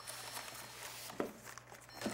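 Faint rustling and handling noise over a low steady hum, with one sharp click a little over a second in.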